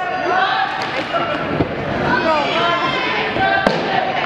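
Many voices of a crowd talking and calling out at once, echoing in a gymnasium, with a few sharp thuds on the hardwood floor.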